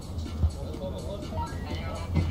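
Faint background voices and music of the venue ambience at the top of the ski jump, under a steady low hum, with one short thump about half a second in.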